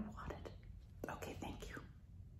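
A woman's faint, breathy whispered vocal sounds, without voice, in two short spells: one just after the start and another from about a second in.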